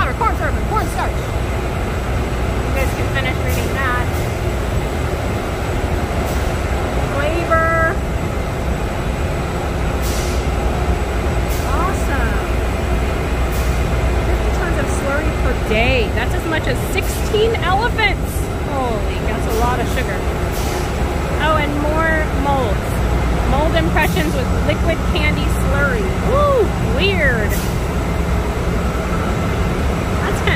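Steady low machine rumble from a candy factory floor, with the chatter of many other people's voices over it.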